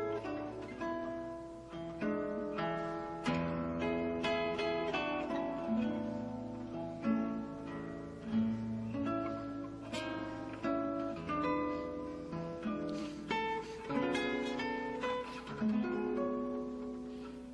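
Instrumental background music on plucked strings, guitar-like, with notes and chords struck in a steady flow and left to ring.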